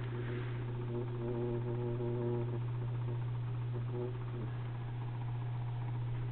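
Thermal laminator running as it feeds a sheet through its heated rollers: a steady low hum, with a fainter higher tone coming and going in the first few seconds.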